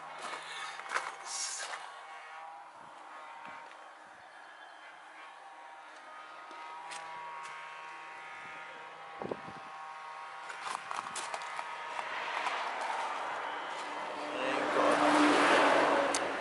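A road vehicle passing nearby, its tyre and road noise swelling over the last few seconds and becoming the loudest sound. Before that, faint outdoor background with a few light knocks.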